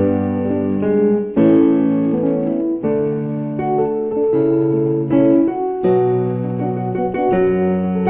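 Yamaha portable keyboard on a piano voice, playing two-handed block chords in D major, with a new chord struck every second or so.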